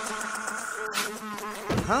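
Flies buzzing in a steady drone with several held tones; a high hiss over it cuts off about a second in. Near the end a man's voice says a rising 'Huh?'.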